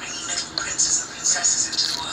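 Television drama soundtrack: quiet dialogue between actors over soft background music.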